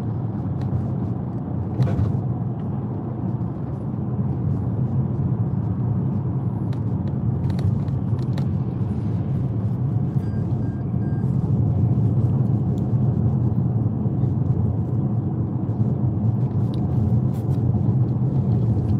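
Steady low rumble of a car's engine and tyres on the road, heard from inside the moving car's cabin, with a few faint ticks.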